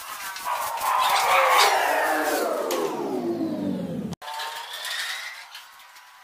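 An electric motor winding down, its whine falling steadily in pitch for about four seconds before it cuts off abruptly. A fainter whine follows.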